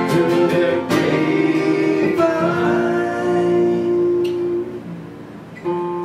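Three acoustic guitars strumming chords. A chord is held and left to ring, fading away about five seconds in, and the strumming starts again just before the end.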